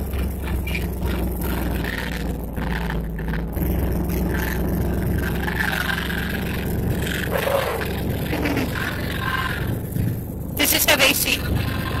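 1958 Chevrolet Delray's engine running as the car is driven, heard from inside the cabin, with the engine note changing about three and a half seconds in.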